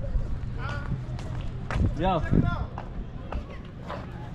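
Footsteps on brick paving as someone walks, with short non-word vocal sounds from a person about half a second and two seconds in, over steady outdoor background noise.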